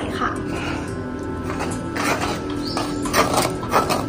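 Background music, with a metal spatula scraping and stirring a thick, sticky mix of rice-straw pulp and tapioca starch in a metal pan, several short scrapes in the second half.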